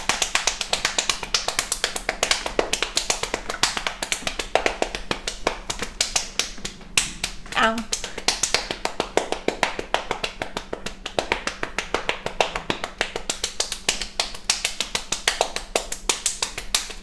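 Improvised drum roll: fast, even tapping, with a short vocal sound about halfway through.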